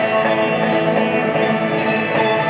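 Live instrumental passage from a small band: two electric guitars, one of them a hollow-body archtop, played through amplifiers with a steady strummed rhythm of about four strokes a second.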